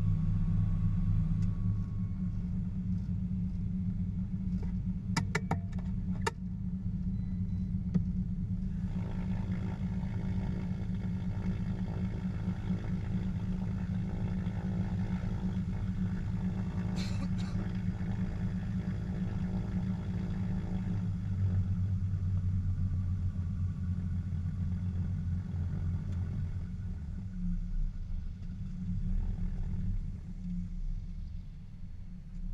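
The twin six-cylinder Lycoming piston engines of a Shrike Commander 500S idling on the ground, heard from inside the cockpit, with a quick run of cockpit switch clicks about five seconds in as the avionics are switched off. The low engine note shifts about twenty seconds in and turns uneven near the end as the engines are brought to shutdown.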